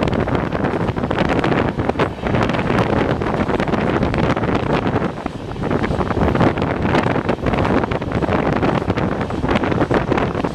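Wind rushing over the microphone from outside a fast-moving express passenger train, over the running noise of the train's wheels on the track. Loud and steady, with many small irregular knocks and gusts.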